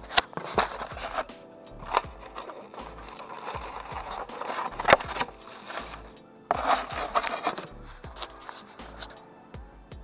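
Background music with a steady beat, over the crinkling rustle of a paper takeout bag and sharp clicks of styrofoam clamshell food containers being handled. A louder rustle comes about six and a half seconds in.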